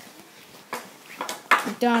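Ball hockey play on a concrete patio: after a quiet moment come a few light knocks, then a boy's play-by-play commentary begins near the end.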